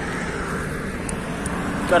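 Steady rush of wind and highway traffic noise heard from a moving bicycle, with a low rumble underneath; a voice starts at the very end.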